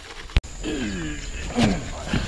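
A sharp knock, then a man's drawn-out groan falling in pitch and a second, shorter one: the strained voice of someone lifting a heavy wooden door panel.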